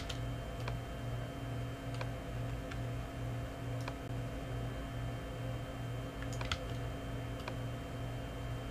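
Scattered clicks of a computer mouse and keyboard, a second or so apart, with a small cluster about six and a half seconds in, over a steady low electrical hum.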